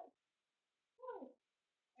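Near silence, broken about a second in by one short call that falls in pitch.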